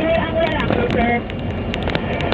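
Wind rushing over the microphone and vehicle running noise while riding along a road, with indistinct voices mixed in.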